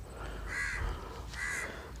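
A bird calling twice, two short harsh calls about a second apart.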